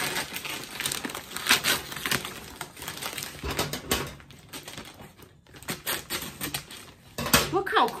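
Paper packaging of an airmail parcel being handled: crinkling and rustling with quick light clicks and taps, busiest in the first half and thinning out after.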